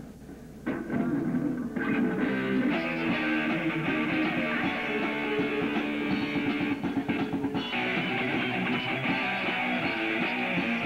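A live rock band playing: electric guitars and drums. There is a brief drop in level in the first second, then the full band comes in loud. The recording has a muffled top end.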